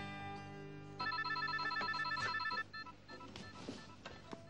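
Acoustic guitar chord ringing out and fading. About a second in, a mobile phone's electronic ringtone starts, a rapid trilling of short beeps that becomes quieter after about two and a half seconds.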